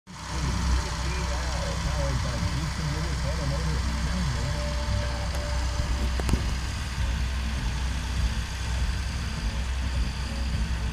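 Massey Ferguson 1135 tractor's six-cylinder diesel engine running steadily with a low drone as it drives across the field spreading seed. A single sharp click comes about six seconds in.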